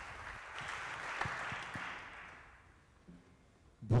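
Audience applause fading away about two to three seconds in.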